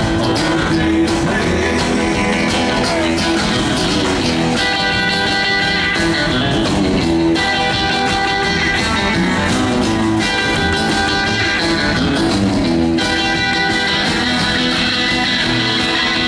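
Live rockabilly band playing without vocals: electric guitar and strummed acoustic guitar over drums, in a steady driving rhythm.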